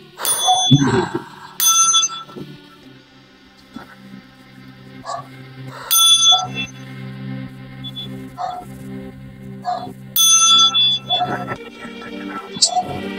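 A brass singing chime bell on a metal rod struck with a metal striker, giving four loud, bright ringing strikes (at the start, a second and a half later, about six seconds in and near ten seconds) with softer taps between, over a steady low drone.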